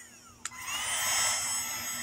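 Uaoaii 21V cordless heat gun switched on with a click about half a second in. Its fan then spins up and runs steadily on the high setting, a steady blowing rush with a thin whine over it.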